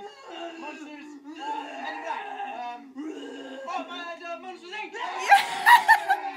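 Voices talking and laughing, with a louder burst of shouting and laughter about five seconds in.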